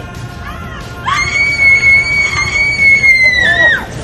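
A woman's long, high-pitched scream of fear during a 15-metre freefall jump, starting about a second in and held steady for nearly three seconds before its pitch drops and it breaks off near the end.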